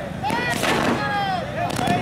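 Firecrackers going off in sharp bangs, with people shouting over them.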